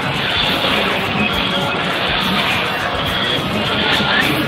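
Fairground music playing over the steady hubbub of a crowd.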